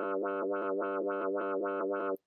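One sustained synth-bass note from a clav bass sample in Ableton's Simpler, its low-pass filter opening and closing in time with a tempo-synced LFO. The brightness pulses evenly, about four times a second.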